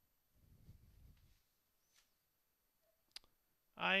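Near silence: faint room tone with a brief low rumble early in the gap and a single sharp click about three seconds in. A man's commentary voice starts right at the end.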